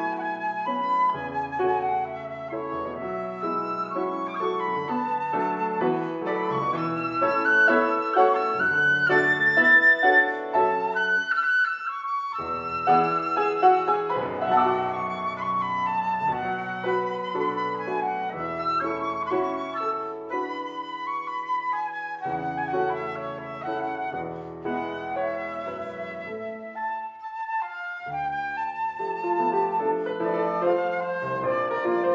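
Concert flute and grand piano playing a duo based on a Chinese folk song.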